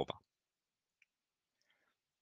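The tail of a spoken word, then near silence with a single faint click about a second in.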